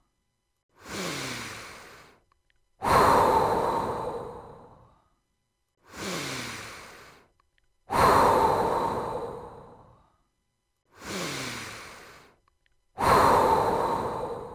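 Slow, deep guided breathing. A softer, shorter breath is followed by a louder, longer breath that fades away, and the pair repeats three times, about once every five seconds, with silence between the breaths.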